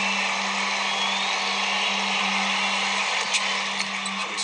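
Steady crowd noise of a basketball arena coming through a TV speaker, with a constant low hum underneath.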